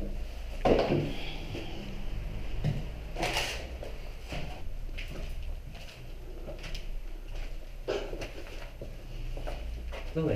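Footsteps on a debris-strewn floor with scattered knocks and scrapes as doors and objects are handled in a small room.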